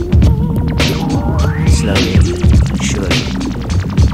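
Instrumental hip-hop beat with no vocals: drums hitting in a steady rhythm over a deep, throbbing bassline and held tones, with one tone sliding upward in pitch about a second in.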